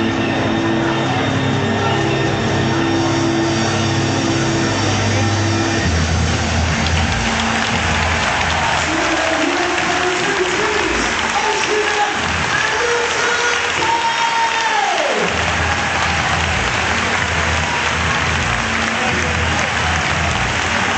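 Dance music with a heavy bass beat played loud over a stadium PA, above a crowd cheering and applauding. The bass thins out while a synth line rises and then falls steeply, and the full beat returns about fifteen seconds in.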